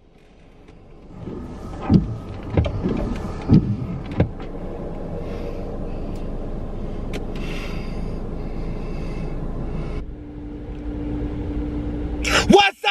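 Car running, a steady low rumble heard from inside the cabin, with a few sharp knocks in the first few seconds. Near the end the rumble changes and a steady hum joins it.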